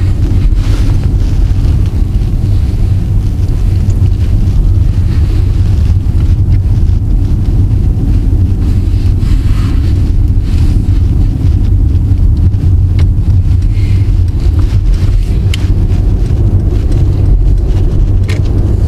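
Steady low rumble of a Mercedes-Benz E 300 de diesel plug-in hybrid on the move, mostly road and wind noise heard from inside the cabin.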